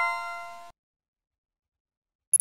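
A bright chime sound effect, a single struck ring of several clear tones that fades out within the first second, marking the correct answer in a quiz.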